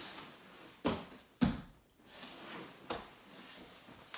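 Bodies and hands landing on a foam grappling mat during jiu-jitsu drilling: two sharp thumps about a second in, half a second apart, the second one louder, then a smaller knock near three seconds, with the rustle of gi cloth in between.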